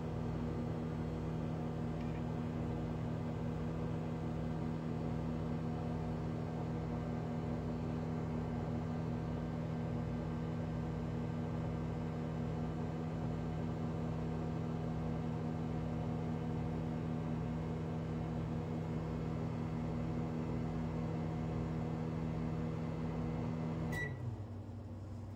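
GE over-the-range microwave oven running: a steady low hum that cuts off at the very end with a short beep.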